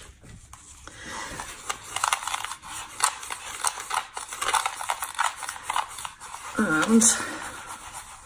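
A wooden craft stick stirring coarse, gritty sand into white glue in a plastic tub, making irregular scraping and grinding strokes.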